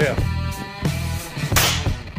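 Compressed-air golf ball launcher, pumped to about 120 psi, firing once: a sharp blast of air about a second and a half in. Rock music with guitar plays underneath.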